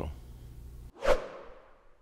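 Faint room tone, then a sudden cut and a short, sharp whoosh sound effect about a second in that fades away over about half a second: a transition swoosh laid under an animated logo.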